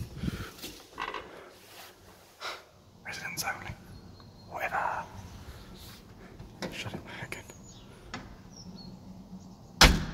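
Small knocks and handling of a heavy maglocked entrance door, then near the end the door shuts with one loud bang.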